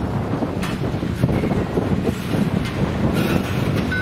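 Intermodal freight cars rolling past: a steady rumble of steel wheels on rail, with a few sharp clicks from the wheels.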